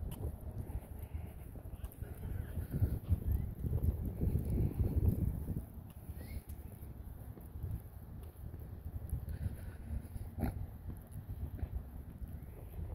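Wind rumbling on the microphone, with a few faint animal calls and one sharp click about ten and a half seconds in.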